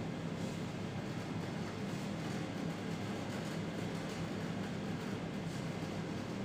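Steady low room hum, with faint, irregular scratchy strokes of a marker writing on a whiteboard.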